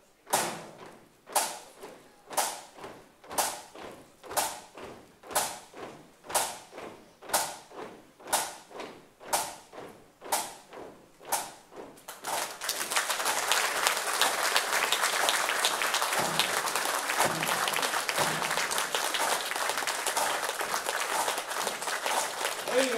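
A band drum taps out a slow, even marching beat, about one stroke a second, for roughly twelve seconds. Then the hall's audience breaks into sustained applause.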